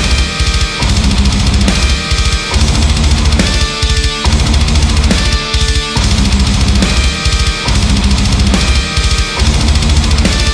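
Heavy metal band playing an instrumental passage: driving drum kit with heavy bass drum under distorted guitars and bass. The low riff breaks off briefly about every second and a half.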